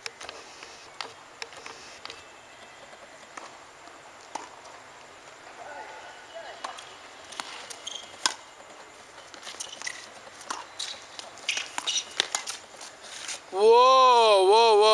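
Scattered sharp knocks and taps of tennis play on an outdoor hard court, with tennis balls being struck and bouncing, over a low background hum; they bunch together near the end. A man's voice then calls out loudly, in a sing-song pitch, just before the end.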